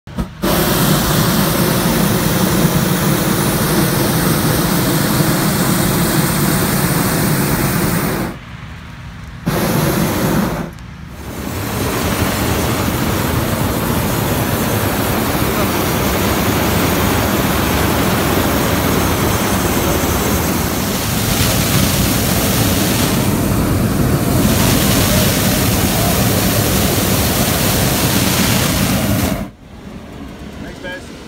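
Hot-air balloon propane burner firing in long blasts, a loud steady rush of noise. It breaks off briefly twice, at about a third of the way in, and cuts off just before the end.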